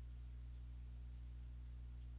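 Faint scratching of a stylus writing a word by hand on a pen tablet, over a low steady electrical hum.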